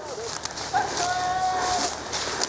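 A hunting horn blowing one long, steady note of about a second, starting a little under a second in and cutting off cleanly. Just before it, near the start, there is a brief rising-and-falling whine.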